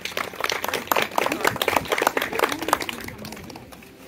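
A small crowd of onlookers applauding, a dense patter of hand claps that thins out near the end.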